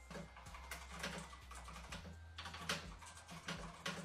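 Fast typing on a computer keyboard: quick flurries of keystrokes with brief pauses between them.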